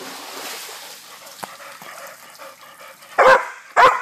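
Chocolate Labrador splashing as it wades through shallow pool water, then barking twice in quick succession near the end, two loud barks about half a second apart.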